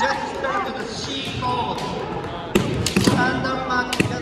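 Kendo fencers shouting kiai as they face off, then, about two and a half seconds in, a quick run of sharp cracks and thuds: bamboo shinai striking armour and feet stamping on the hardwood floor, with one more crack near the end.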